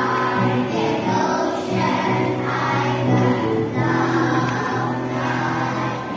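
A children's choir singing a song, each note held for about half a second to a second before moving to the next.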